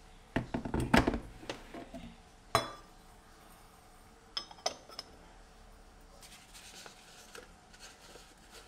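Kitchenware being handled on a stone counter. A quick run of knocks and clatter comes about half a second to a second in as the kettle is set back down, and a single ringing metallic clink follows near the third second. Two light clicks sound as a lid is fitted onto a small metal pot.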